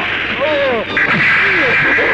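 Loud action-film fight sound effects: a harsh, sustained noisy blast that breaks off briefly about a second in and comes back stronger, with voices crying out in rising and falling pitches over it.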